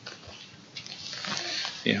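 Indistinct, breathy voices from the group in a small room, too soft to make out, answering a question. Near the end a man says "yeah".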